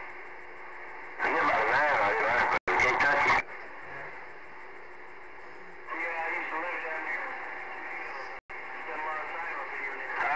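Distant stations' voices coming through a Galaxy CB radio's receiver, thin and narrow-sounding over steady static hiss. A louder burst of talk starts about a second in, and the signal cuts out sharply for an instant twice.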